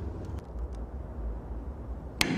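Low steady hum with a few faint metallic clicks as pliers work the spring clip onto a roller chain's connecting link.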